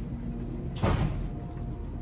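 A door shutting once with a short thump about a second in, over a steady low hum.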